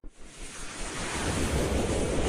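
Whoosh sound effect: a rush of noise that starts abruptly and swells, with a rising sweep coming in during its second half.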